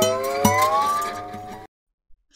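Cartoon sound effect of a bubble-gum bubble being blown up: a pitched tone gliding upward in small steps, which cuts off suddenly near the end.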